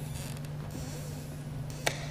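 A single sharp tap near the end, from blitz chess play at the board, over a steady low hum.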